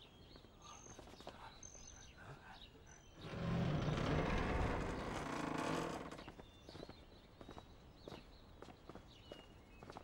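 Faint outdoor ambience with a few short, high bird chirps and scattered light clicks. About three seconds in, a loud, noisy roar swells for about three seconds, then fades.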